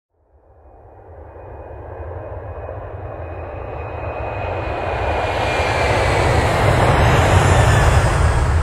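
Intro sound effect: a rumbling whoosh that rises from silence and swells steadily louder over several seconds, heavy in the low end, with a faint high tone sliding gently down through it.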